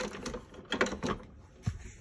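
A few light mechanical clicks and knocks, scattered over about two seconds, from a coffee brewer being handled and set to brew.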